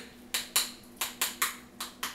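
A spoon stirring thick canistel-and-lime pudding in a bowl, knocking and scraping against the bowl about three times a second.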